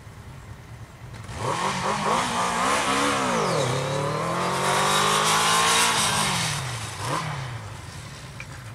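Motorcycle accelerating hard from a standstill. The engine's pitch climbs, drops sharply at a gear change about three and a half seconds in, then climbs again more slowly before the sound fades as the bike pulls away.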